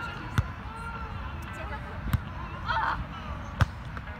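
A volleyball being struck by players' hands and forearms during a beach volleyball rally: three sharp slaps a second and a half or so apart, like a pass, set and attack.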